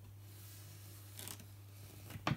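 Faint handling of bamboo warp yarn as it is carried to and wrapped around a tooth of a wooden frame loom, with one short soft rustle about a second in, over a low steady hum.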